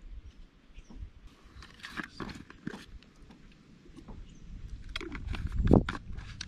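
Handling noise from a plastic Nalgene water bottle being got out and opened: scattered clicks and rustles, then a low rumble that builds to a loud thump just before the end.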